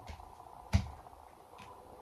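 Hands handling a diamond-painting canvas on a desk: one sharp tap about three-quarters of a second in, with a few faint light ticks around it.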